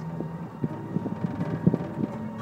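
Small amusement-park ride car running along, rattling, with several irregular short knocks over a low rumble and wind on the microphone.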